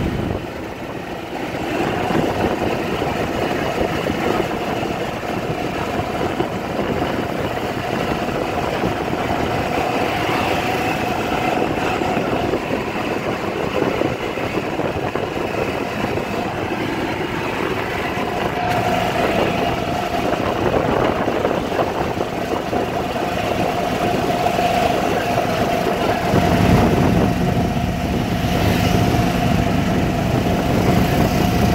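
Golf cart running along a paved road, with steady motor, road and wind noise. A steady whine joins in a little past the middle.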